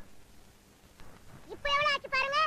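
Mostly quiet, then near the end a high-pitched, wavering meow-like call lasting about half a second.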